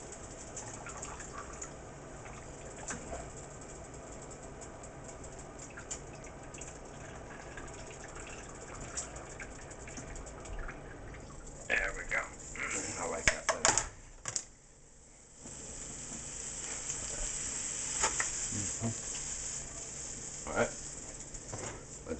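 Meat and broccoli filling sizzling in a skillet, a steady frying hiss. About twelve seconds in the pan is lifted and handled with a few loud clatters, the sizzle drops away briefly, then resumes once the pan is back on the heat.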